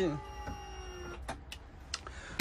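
A man's voice ends a word, then a quiet room with three faint short clicks near the end.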